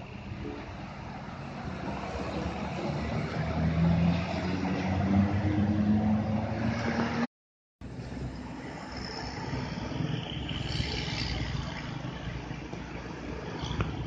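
Diesel engines of tour coaches passing through a bend, the engine note rising as a coach accelerates and loudest a few seconds in. The sound drops out for about half a second, then another coach's engine and road noise carry on steadily.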